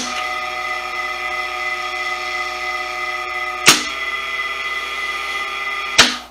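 A small 0.1 kW three-phase induction motor is running on a single-phase supply through a capacitor, started by a star-delta starter. The contactors clack in at the start and the motor runs with a steady whine. About four seconds in, another clack comes as the timer switches the motor from star to delta, and the tone shifts a little. It cuts off with a clack at the very end.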